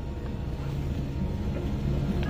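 A bus engine running steadily, heard from inside the passenger cabin as a low sound that grows slightly louder.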